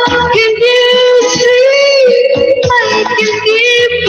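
A woman singing long held notes over backing music with a steady low beat.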